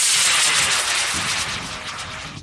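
H125 high-power model rocket motor burning at liftoff, a loud rushing roar that fades as the rocket climbs away, with a sweeping, falling pitch in the roar.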